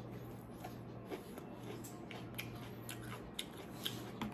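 Faint crunching clicks of a raw White Knight chili pepper being bitten and chewed, scattered irregularly over a low steady hum.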